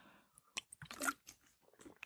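A person sipping and swallowing water close to the microphone: a few faint mouth clicks and a swallow, the loudest about a second in.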